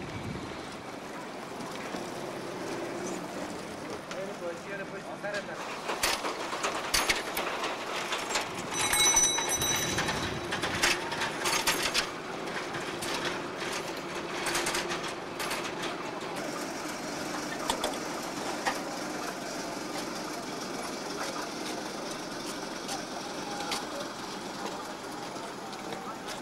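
People's voices over steady background noise, with a run of sharp clicks or knocks from about six to twelve seconds in and a brief high ringing tone near the middle.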